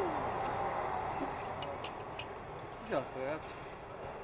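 Café table ambience: a steady background hiss with a few light clicks of china cups and saucers being set down about halfway through, then a short spoken remark.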